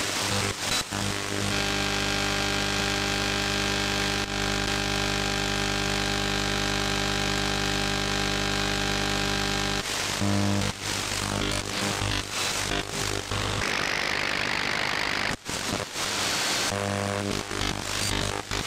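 Shortwave radio audio from an SDR demodulating AM while being tuned across the HF band around 3 MHz. It starts with a steady buzz of many even tones lasting several seconds. Then comes crackling static and hiss with clicks and brief dropouts as the tuning moves across the band.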